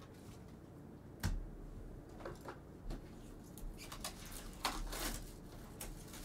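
Faint handling noises: a soft thump about a second in, then scattered light clicks and taps.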